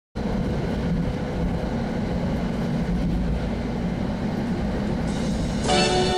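Steady low rumble of a moving train. Near the end, an orchestral intro with brass comes in over it.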